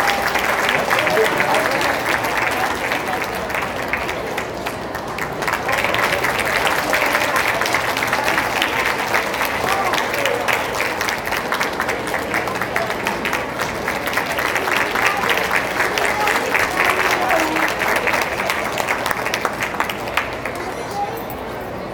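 Audience applauding, a dense steady clatter of many hands clapping, with voices in the crowd mixed in.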